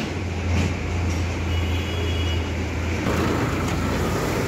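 Road traffic noise with a steady low engine hum from a nearby vehicle.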